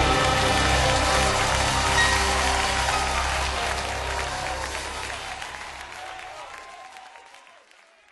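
Audience applause and cheering as a gospel choir song ends, with the last sustained chord of the music dying away under it in the first two seconds. The applause fades out steadily to silence by the end.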